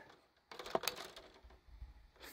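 Faint clicks and light rattles of a clamp meter being handled and moved from one wire to the next, its jaws knocking against the wires.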